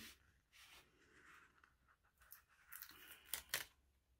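Faint rustling of paper sticker sheets being handled and a sticker peeled from its backing, with a couple of sharper ticks about three and a half seconds in.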